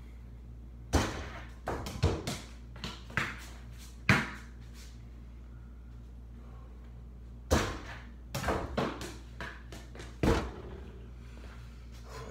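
A basketball shot at a high wall-mounted hoop, banging against the backboard and rim and bouncing on a hard floor. Two runs of knocks and bounces, one about a second in and another about seven and a half seconds in, over a steady low hum.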